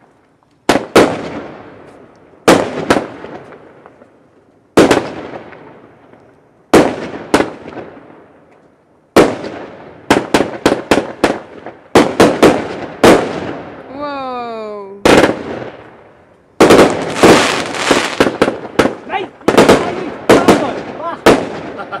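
Fireworks going off shot after shot: each loud bang echoes and fades away over a second or two. A whistle sounds about fourteen seconds in, then a fast run of bangs and crackling near the end.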